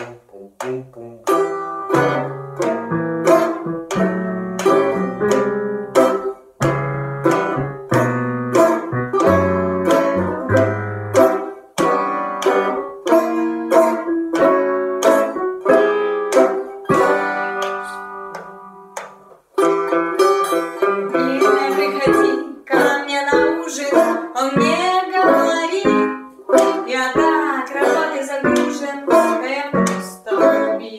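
Banjo being picked, playing a tune note by note; the playing breaks off briefly a little before the twenty-second mark, then returns denser and brighter.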